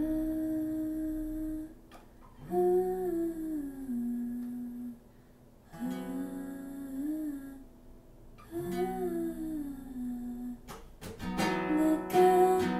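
A woman humming a slow, wordless melody in four long phrases over acoustic guitar, with quiet pauses between the phrases. Fuller guitar strumming comes in near the end.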